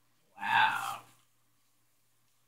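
A woman's short breathy gasp, under a second long, about half a second in.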